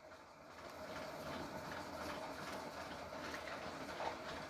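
Faint, steady background noise with a low rumble and a faint steady hum: room noise picked up by the recording microphone.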